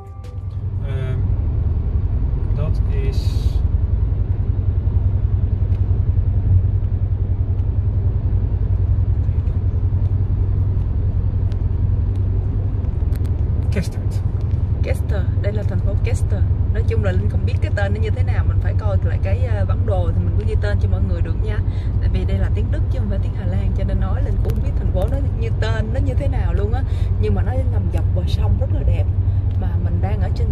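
Steady low road rumble inside a moving car's cabin at motorway speed. From about halfway through, voices talk quietly over it.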